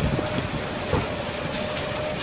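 A large fire burning: a steady low roar with a few sharp pops, and a thin steady tone running through it.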